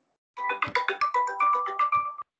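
A phone ringtone: a rapid melodic run of short, pitched notes that begins about a third of a second in, following a brief pause after an earlier identical ring.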